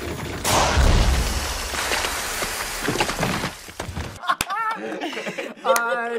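A sudden loud, noisy crash-like burst with a few knocks in it, lasting about three and a half seconds and cutting off abruptly. Men laughing follows near the end.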